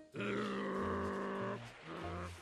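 A cartoon character's drawn-out vocal sound, one held note lasting about a second and a half that dips in pitch as it starts, over light background music.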